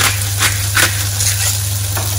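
Eggs and mixed vegetables sizzling in two frying pans, with a few quick grinding strokes of a pepper mill over the eggs in the first second.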